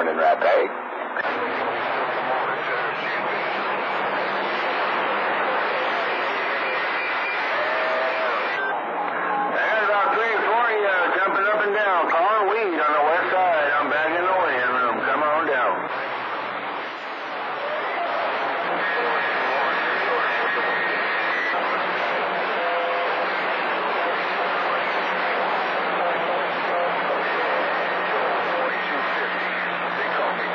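CB radio receiving long-distance skip on channel 28: continuous loud static with faint, garbled distant voices buried in it. Warbling, wavering tones come through midway, and steady whistles of interfering carriers sound later on.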